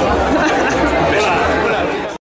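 Loud, steady chatter of many people talking at once in a busy room.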